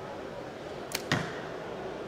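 A compound bow shot with a mechanical release: a sharp crack of the release and string about a second in, then, a fraction of a second later, the louder thud of the arrow striking the foam target.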